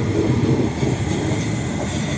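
Queensland Rail SMU electric multiple unit rolling past along the platform: a steady, loud rumble of wheels on rail.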